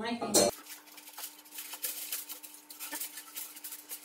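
Aluminium foil crinkling and rustling in quick small crackles as it is folded over and pressed down by hand.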